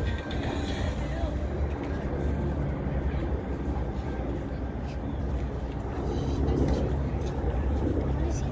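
Outdoor ambience dominated by a low, steady rumble of wind buffeting the microphone, with faint voices of people around.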